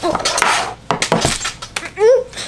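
A thin clear plastic wrapper crinkling, then several sharp clicks and taps as a hard plastic toy capsule is handled on a tabletop.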